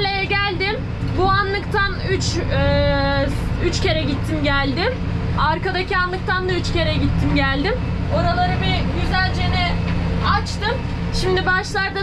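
A woman talking over a tractor engine running steadily, heard from inside the cab.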